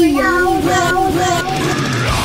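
A child's voice singing a short melodic line of several wavering notes, as part of a radio show's intro jingle.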